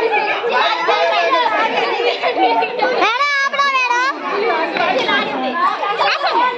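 A group of women and children talking over one another at once. About halfway through, one voice rises above the rest in a loud, drawn-out, wavering call for about a second.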